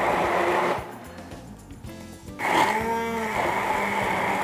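Hand-held immersion blender grinding a chili spice paste in a tall beaker. It runs with a steady whirr, cuts out about a second in, and starts again about two and a half seconds in.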